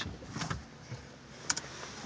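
A few short, sharp clicks, about half a second in and again near a second and a half, over a low rumble inside a car's cabin.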